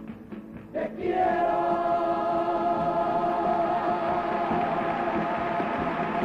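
Cádiz carnival comparsa chorus with its accompaniment. A few quick rhythmic strokes come first, then about a second in the voices swell into one long held chord with vibrato, the closing chord of the song.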